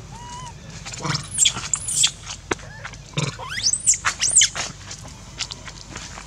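Baby macaque screaming in two bouts of high, arching squeals, about a second in and again past three seconds, as an adult grabs hold of it: distress cries.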